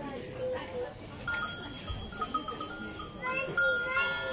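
Small bells ringing at several pitches start about a second in, among a pen of sheep, over background voices.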